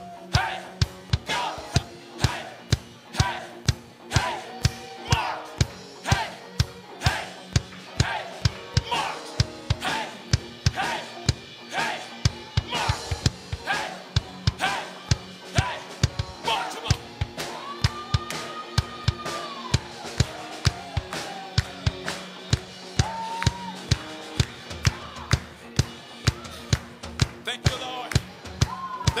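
Live worship band playing: electric guitar and keyboard over a drum kit keeping a steady beat of about two strokes a second, with a long held note near the middle.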